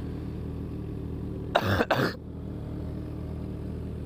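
A person coughs hard twice in quick succession, about one and a half seconds in, a heavy cough, over a motorcycle engine idling steadily.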